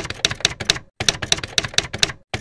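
Typing sound effect: quick, sharp typewriter-like keystroke clicks, about seven a second, in two runs with a brief pause about halfway.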